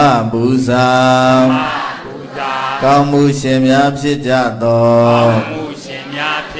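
A man's voice chanting a Buddhist recitation in long, held melodic notes that slide into pitch at their starts, with brief breaks about two seconds in and again about four and a half seconds in.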